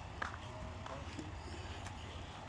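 Quiet outdoor background: a low steady rumble with a single light click about a quarter-second in.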